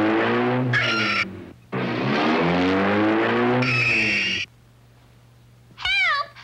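Cartoon car sound effect: an engine revving up and falling back under a noisy rush, twice, each ending in a short high squeal. After a brief quiet near the end, a woman's cartoon scream begins.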